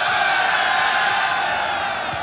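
Football stadium crowd, a dense mass of supporters' voices chanting together in a steady, sustained drone.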